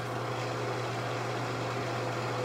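A steady low hum with a faint even hiss, unchanging throughout.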